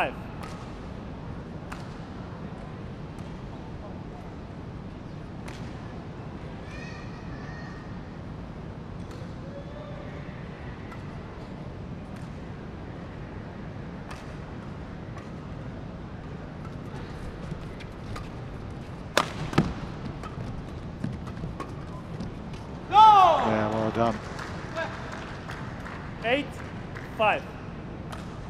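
Steady indoor arena hum between badminton points, with light racket strikes on a shuttlecock during a short rally, the sharpest hit about two-thirds of the way in. A loud shout with a bending pitch follows a few seconds later as the point ends.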